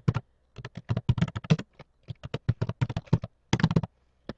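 Typing on a computer keyboard: a quick run of keystroke clicks in short bursts with brief pauses between them.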